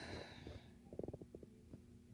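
Near silence, with a faint breathy hiss at the start and a few faint, short clicks around the middle.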